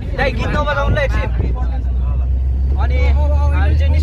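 Steady low rumble of a passenger vehicle's engine and road noise inside the cabin, with people's voices over it in the first second and again near the end.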